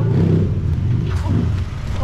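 A taxi's engine running close by, a low steady rumble.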